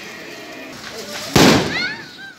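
An aerial firework shell bursting with one sudden loud bang about a second and a half in, the boom trailing off over half a second.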